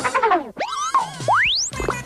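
Cartoon sound effects over music: gliding tones that fall in pitch, then a single fast rising slide-whistle-like whistle about a second and a half in.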